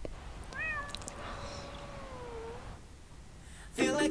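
A single long cat meow that sweeps up at the start, holds steady, then dips away at the end. Music starts abruptly just before the end.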